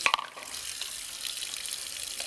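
Water running steadily into a salon shampoo basin, with a short knock right at the start.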